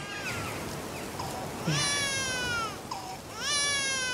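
Newborn baby crying: two long wails of about a second each, each sliding slightly down in pitch, with short whimpers between.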